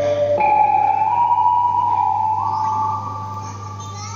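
Vietnamese tuồng opera music: one long high note, begun about half a second in, held and stepped up in pitch twice, then fading near the end.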